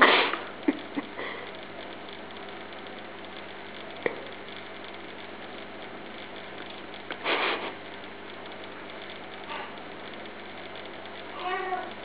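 A person laughing in short breathy bursts: one at the start, another about seven seconds in, and a higher, voiced laugh near the end, over a steady low hum.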